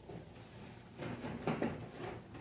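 Handling noise: a few soft knocks and rustles about a second in, over a faint low hum.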